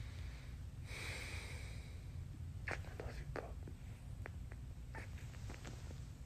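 A man kissing a small dog up close: a soft breathy sound about a second in, then a string of short, light kissing smacks, over a low steady rumble.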